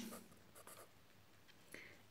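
Faint strokes of a marker pen writing on paper.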